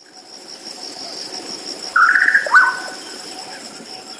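Steady high insect trilling, with a short chirping call about two seconds in that ends in a quick fall in pitch: a nature-sound effect used as a segment transition.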